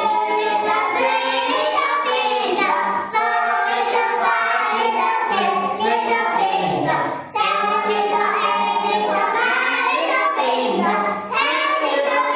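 A class of children singing a song together, loudly and in unison, in phrases with short breaks between them.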